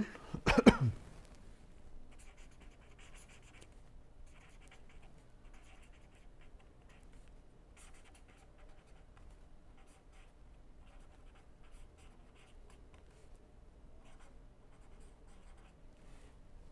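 Pen writing on paper: faint, irregular scratching strokes as a few words are written out.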